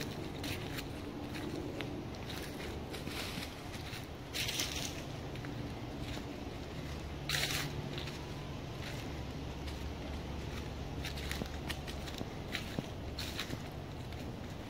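Footsteps crunching through dry fallen leaves on a woodland path, a steady run of small crackles with two louder crunches, about four and a half and seven and a half seconds in.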